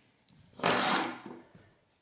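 A brief scrape of a hand or tool across the wooden workbench top, starting sharply a little after half a second in and fading within about half a second.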